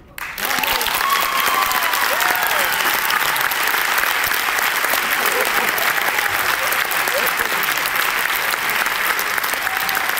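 Audience applauding steadily, with a few voices calling out over the clapping. The applause breaks out suddenly just after the music ends.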